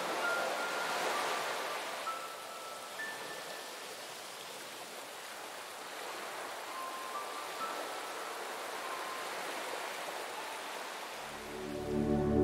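Steady rain hissing, with a few soft, high chime-like notes sounding now and then. Low sustained music swells in near the end.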